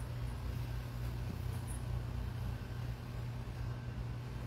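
Steady low background hum with a faint even hiss, no distinct events.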